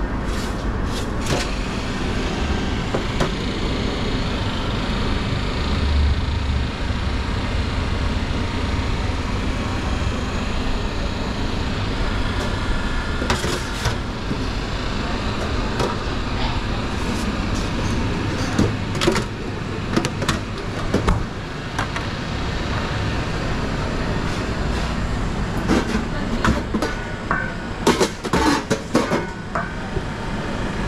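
Steady low rumble of a commercial kitchen, with scattered clinks and knocks of metal trays and utensils being handled, more frequent in the last third.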